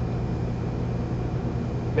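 Steady hum and rush of a restaurant kitchen's ventilation fan, unchanging throughout.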